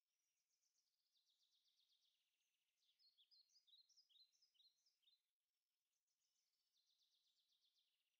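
Near silence with very faint birdsong: a rapid trill, then a run of short sliding chirps about halfway through, then the trill again near the end.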